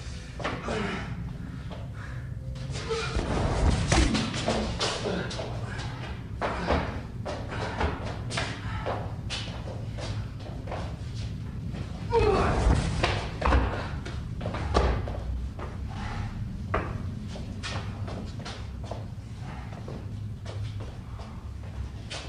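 Fistfight scuffle: repeated thuds, slams and knocks of blows and bodies, with shouted voices rising loudest about four and twelve seconds in.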